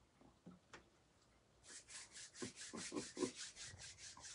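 Palms rubbed quickly back and forth against each other, starting a little under two seconds in: a faint, even swishing of about six strokes a second.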